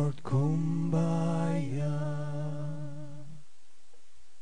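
Slow a cappella singing without words: long held notes that step down in pitch, with a short break just after the start, fading out about three and a half seconds in.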